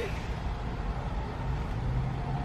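Steady low rumble of a car heard from inside the cabin, engine and road noise with no clear events.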